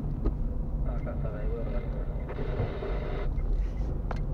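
Steady low rumble of a car's engine and tyres heard from inside the cabin while driving, with voices talking over it at times.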